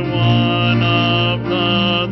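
A hymn being sung, led by a man's voice close to the pulpit microphone, on held, sustained notes.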